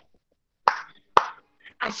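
Two sharp hand claps about half a second apart, keeping time in a sung greeting song; a woman's singing starts again near the end.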